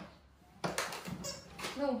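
A person's voice: a few short, breathy, noisy sounds, then a brief pitched "oh" near the end.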